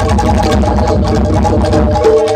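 Jaranan gamelan ensemble playing: metal percussion holds steady ringing tones over busy, rapid low drumming.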